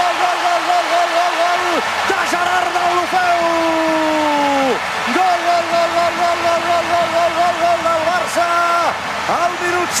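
Football commentator's long goal cry: a man shouting "gol" over and over on one held pitch, broken a few seconds in by one long falling call, with stadium crowd noise underneath.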